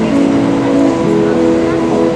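One-man-band street musician playing harmonica chords over an acoustic guitar. The held notes change every second or so.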